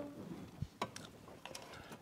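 Faint handling sounds: a few light clicks and ticks as a thin steel wire line is pulled through a loop on the back of a bass absorber.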